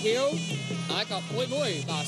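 Traditional Cambodian boxing ring music: a sralai reed pipe plays a wavering, nasal melody over a steady low drone.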